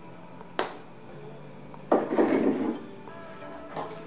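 Plastic cap of a sesame oil bottle snapping shut with a sharp click, then a louder rough clatter about two seconds in as the bottle is handled and set down, and a small click near the end. Soft background music runs underneath.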